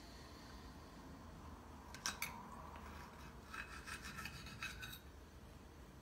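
Faint scraping and clicking of a knife and fork on a plate as a small red chili pepper is cut: a couple of short clicks about two seconds in, then a longer stretch of scraping until about five seconds in.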